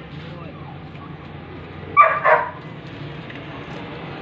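A dog barks twice in quick succession about two seconds in, two short loud barks against a low steady background hum.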